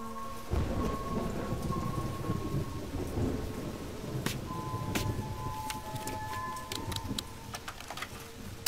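Dramatic film sound design: a sudden deep rumble about half a second in, then a steady noisy wash like rain or thunder. Held music tones play above it, and scattered sharp clicks come in the second half.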